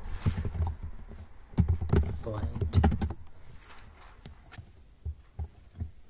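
Computer keyboard typing: irregular keystroke clicks as code is entered.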